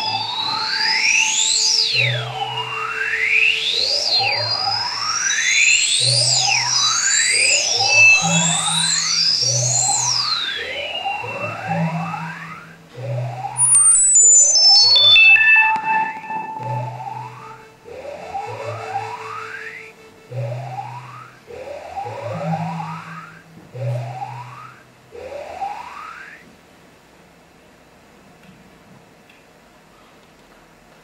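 Electronic computer music with many quick rising synthesizer glides and high falling sweeps over short, low bass notes. It thins out and fades away about 26 seconds in, leaving only a faint hush.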